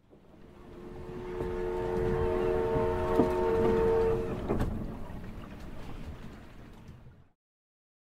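A ship's horn sounds one steady chord of several tones for about three and a half seconds over a rumbling wash of noise. The noise swells and then fades away after about seven seconds.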